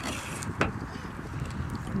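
Metal cutlery clinking and scraping on ceramic dinner plates, with one sharp clink a little over half a second in, over a steady outdoor background hiss.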